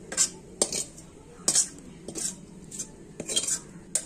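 Metal spatula scraping cooked green beans and potato out of a steel wok into a stainless steel bowl: an irregular series of about seven sharp scrapes and clinks of metal on metal.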